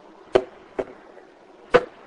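Echovox ghost-box app sounding through a small speaker: three short clipped bursts of chopped speech fragments, spaced apart.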